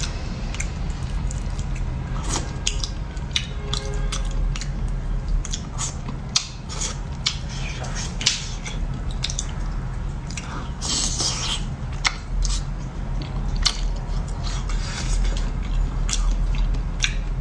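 Close-miked wet chewing and mouth sounds of someone eating soft braised fish: irregular small smacks and clicks, several a second, over a steady low hum.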